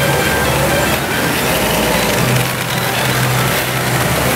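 Steady, loud pachinko-parlour din of machines and rattling steel balls, with a Sanyo Umi Monogatari pachinko machine's music and effects playing over it as its screen runs a chance presentation.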